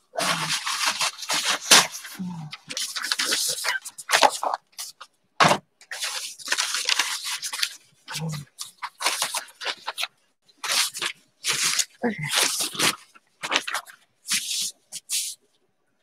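Repeated bursts of rustling and scraping from materials being handled by hand, with a few sharp clicks between them.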